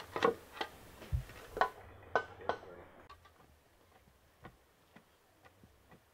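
Wooden pestle pounding in a wooden mortar: short, dull knocks about two a second, clearer in the first half and then faint.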